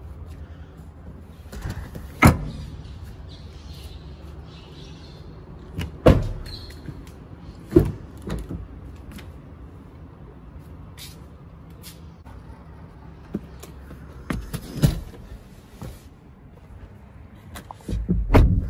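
Sharp thumps and knocks from a car's folding rear seat and doors being handled: four loud ones spread across the stretch, with smaller clicks between, over a low steady hum.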